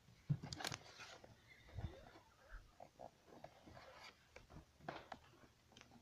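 Faint, scattered clicks and knocks of hands handling things close to the camera, with the camera itself being moved near the end.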